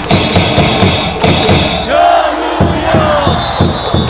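A baseball cheer song over the stadium speakers with a large crowd shouting along, and sharp rhythmic beats of cheer sticks and drums to the music.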